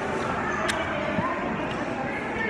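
Background chatter of other diners, faint and steady, with a single sharp click about two-thirds of a second in.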